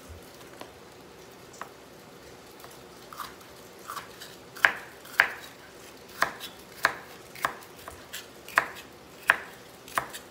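Kitchen knife slicing bitter melon on a wooden cutting board: a few light taps at first, then steady knife strokes on the board about twice a second from about halfway in.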